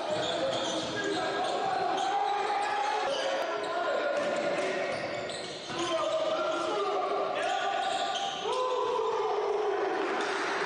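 Live basketball game sounds in a gym: the ball bouncing on the hardwood court, sneakers squeaking and players' voices, all echoing in the hall. Long squeaks, some sliding in pitch, come one after another.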